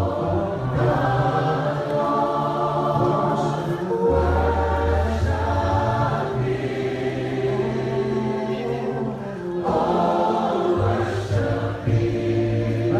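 Choir singing a slow gospel worship song in long held chords over sustained low bass notes, the chords changing every few seconds.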